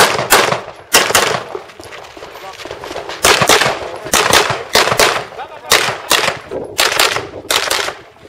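Semi-automatic pistol fired rapidly during a practical shooting stage, mostly in quick pairs of shots, about a dozen in all. There is a pause of about a second and a half near a quarter of the way in before the shooting resumes.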